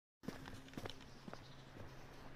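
Faint footsteps on a cobblestone path: a few irregular taps and scuffs of shoes on stone. A faint steady low hum comes in about a second in.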